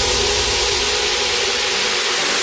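Trance track in a breakdown: a steady wash of white noise over held synth chords, with the kick drum and bass dropped out.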